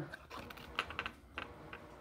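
Faint, unevenly spaced light clicks of Pokémon trading cards being handled, one card slid off the front of a small stack in the hands and tucked behind the others.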